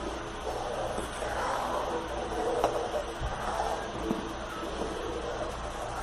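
Steel spoon stirring thin kadhi batter in a metal kadai over a gas burner on full flame: a steady rushing noise, with a few faint taps of the spoon against the pan.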